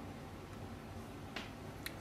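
Two faint clicks about half a second apart near the end, over low room hiss: the laptop being clicked to open an app.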